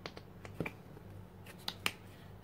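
A few light, sharp clicks of a plastic acrylic paint tube being handled and squeezed out at a palette: one at the start, then two quick pairs.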